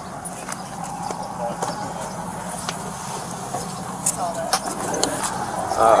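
Steady low hum of a patrol car, with scattered light clicks and rustles of handling and faint voices in the background.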